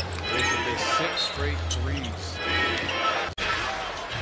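Basketball game sound from an arena: the ball being dribbled on the hardwood court over a steady hum of crowd noise, with short sharp squeaks and knocks from play. The sound breaks off abruptly near the end at an edit.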